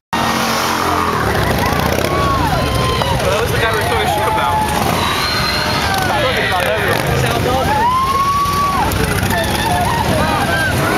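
Roadside crowd shouting and cheering over the rumble of car engines, with one long drawn-out shout about eight seconds in.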